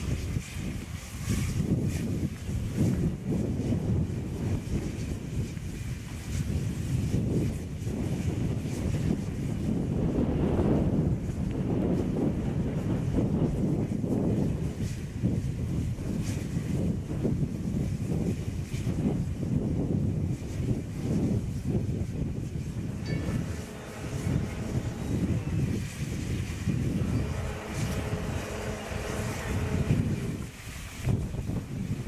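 Heavy wind buffeting the microphone over a DR class 52.80 steam locomotive moving slowly and hissing steam from its cylinders. A faint steady tone comes in during the last several seconds.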